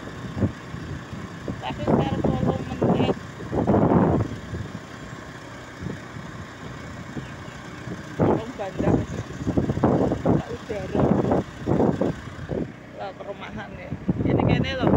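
Motorbike riding along at road speed, its engine and the wind making a steady low rumble, with bursts of talk over it.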